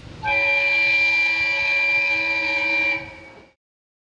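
Diesel railcar's horn sounding one long steady blast of about three seconds, a chord of several held tones, then dying away.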